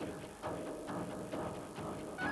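Background music with short notes repeating about twice a second over a held pitched layer.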